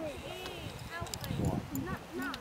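Several indistinct voices talking at once, overlapping chatter with no clear words, and a few low thumps partway through.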